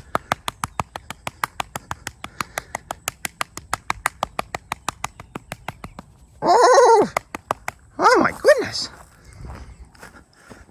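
A hand patting a cat's back and rump fast and lightly, about six slaps a second, stopping about seven and a half seconds in. Two drawn-out, swooping cooing sounds from a voice follow, the first about six and a half seconds in.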